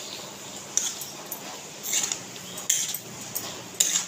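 A spatula stirring shrimp in a thick mustard masala in a kadhai, scraping against the pan several times at irregular intervals.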